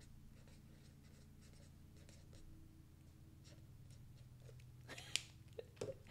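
Faint scratching of a Stampin' Write felt-tip marker writing a word on paper, over a steady low hum. A couple of sharper clicks near the end.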